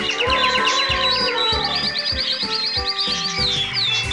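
Background music with a steady beat, with high falling chirps like birdsong repeating over it. A quick run of high notes and a slow falling glide sound in the first two seconds.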